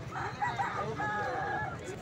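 A rooster crowing once: a call of under two seconds that ends on a long held note.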